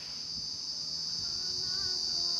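A steady, high-pitched insect drone that builds slightly in loudness. About halfway through, faint held musical tones begin underneath.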